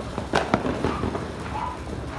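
Ground fountain firework spraying sparks: a steady hiss broken by sharp crackling pops, the loudest about half a second in.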